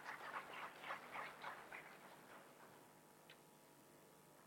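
Faint scattered clapping from a small audience, about four or five claps a second, dying away within the first three seconds, with one last click near the end.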